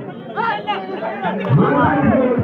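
Men's voices talking and calling out over crowd chatter at a kabaddi match, picking up again about half a second in and louder near the end.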